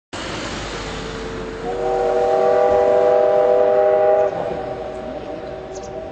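Ōigawa Railway steam locomotive's whistle blowing: a single tone that swells into a long chord of several notes, held for about two and a half seconds, then stopping about four seconds in with its sound fading away, over a steady rushing background.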